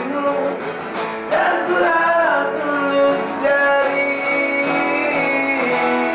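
Informal acoustic-style band jam: an acoustic guitar strummed with an electric guitar, and a voice singing the melody over the chords.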